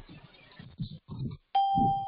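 A single bell-like electronic notification chime, starting sharply about three-quarters of the way in and fading within a second, over faint background voices.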